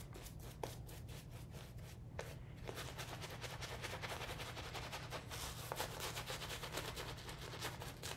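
Shaving brush swishing and scratching lather over the face and neck in rapid back-and-forth strokes, working added water into the shave soap lather; the strokes grow faster and denser about three seconds in.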